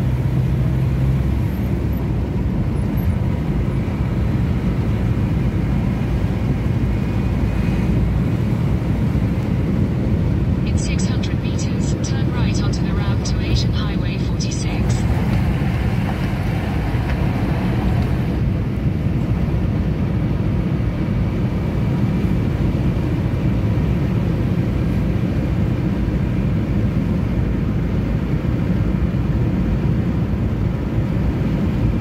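Steady low rumble of engine and tyre noise inside a moving car's cabin. About eleven seconds in, a cluster of sharp clicks or crackles lasts a few seconds.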